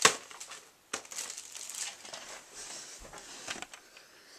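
Handling noise from a plastic VHS cassette being picked up and turned toward the camera: a sharp click at the start and another about a second in, with rustling and small clicks between.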